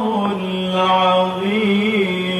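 A man's melodic Quran recitation (tilawah), holding one long sustained note that steps briefly up in pitch a little past halfway through.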